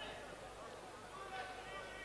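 Faint, indistinct voices in an arena over a steady low background noise, with one short voiced stretch about a second and a half in.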